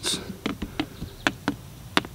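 A handful of light, irregular taps and clicks as a thin wooden dowel is poked into the buckshot holes in a watermelon's rind and the melon is handled.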